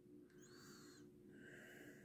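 Near silence: faint room tone with a low steady hum, and two very faint soft sounds about half a second and a second and a half in.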